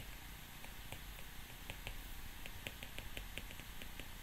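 Stylus tip tapping on a tablet's glass screen during handwriting: a faint, irregular run of light ticks, several a second.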